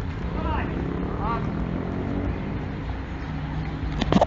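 Street ambience: a low, steady traffic rumble with brief voices in the background.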